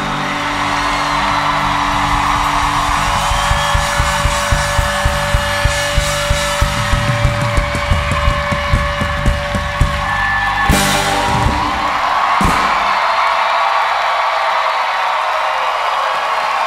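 A live rock band's closing chord held under a run of regular drum hits, ending on a big crash about eleven seconds in and a last hit a second and a half later. After the final hit, the audience cheers and applauds.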